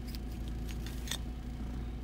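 A few light clicks and rattles as the opened car-roof GPS antenna, its circuit boards and metal base, is turned over in the hands, over a steady low hum in the car cabin.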